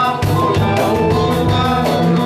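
Twarab music played by a band, with sustained melody lines over a steady beat.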